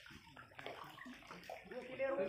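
Faint sloshing of water in a stone well.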